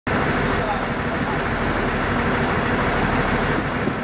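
JR KiHa 40 series diesel railcar idling: a steady engine rumble with a dense hiss over it, and faint voices in the background.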